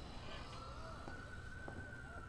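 Quiet low background ambience with a single faint, steady high tone held throughout, rising slightly in pitch.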